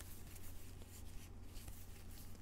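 Faint rustle and scrape of trading cards sliding against each other as gloved hands leaf through a stack, over a steady low hum.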